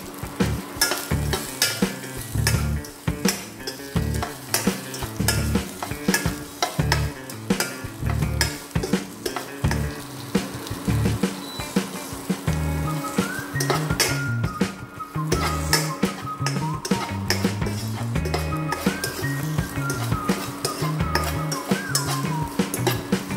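Chopped okra sizzling as it fries in a black wok, with a steel spoon scraping and clinking against the pan as it is stirred. Background music with a steady bass line plays throughout, and a melody joins about halfway through.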